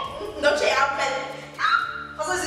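Women's voices in animated conversation, speech with high-pitched, rising exclamations.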